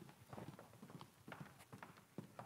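Footsteps of several people walking on a wooden stage floor: faint, irregular clacks of hard-soled shoes, overlapping.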